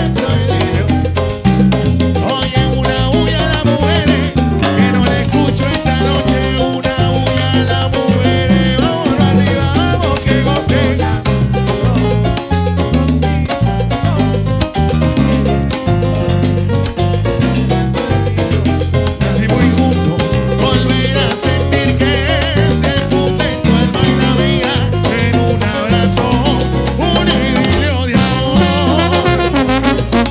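Live salsa band playing a steady groove: bass guitar, timbales and drum kit with keyboard, under a male lead singer.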